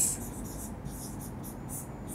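Felt-tip marker writing on a whiteboard: a run of short, high, scratchy strokes as a word is written.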